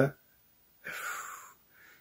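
A man's short in-breath about a second in, lasting about half a second, after the tail end of a spoken word.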